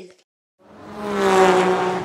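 Engine sound of a vehicle driving off, starting about half a second in, swelling to a peak and then fading away with a slight drop in pitch.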